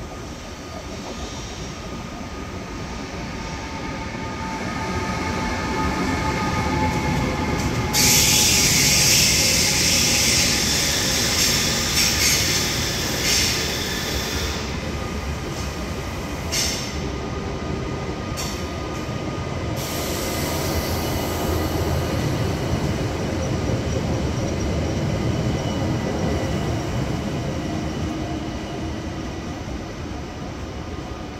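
ÖBB Railjet passenger train rolling past on a station track, its wheels running over the rails with steady high squealing tones. From about 8 to 20 seconds in, a loud, high-pitched screech from the wheels rises over the rumble.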